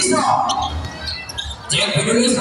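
A basketball bouncing a few times on a concrete court, with voices over it.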